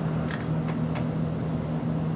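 A steady low machine hum with two constant tones, broken by three faint short ticks in the first second.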